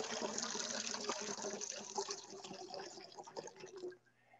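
Water poured from a cut-glass pitcher into the small metal bowl of a baptismal font, a steady splashing that thins to a broken trickle and stops near the end.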